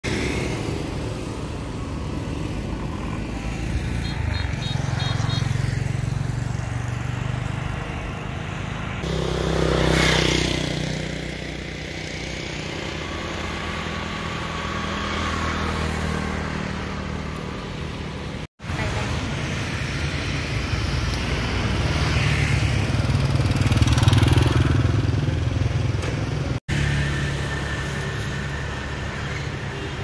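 Motorbike traffic on a road: a steady low engine hum with motorbikes passing by, loudest about ten seconds in and again a little before the end. The sound cuts out abruptly twice for a moment.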